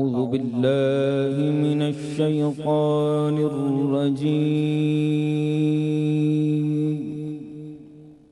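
A solo male Qari reciting the Quran in melodic tarteel style. He opens with an ornamented, wavering phrase, then holds one long steady note that fades away in the last second.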